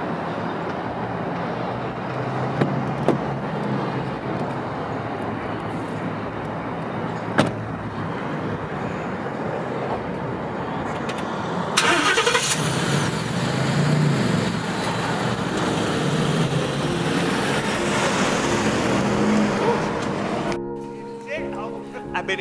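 Steady outdoor vehicle rumble with a few sharp knocks. About twelve seconds in, the sound of a Ford F-150 pickup's engine comes in suddenly louder and brighter and keeps running. A rap track starts near the end.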